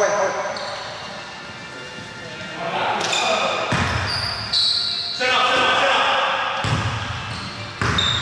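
A basketball bouncing on a hard gym floor in an echoing hall, with players' voices calling out.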